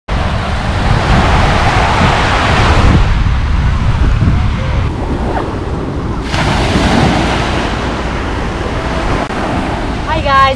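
Small waves washing onto a sandy beach, with wind buffeting the microphone. The hiss of the surf drops away for about a second around five seconds in, then returns.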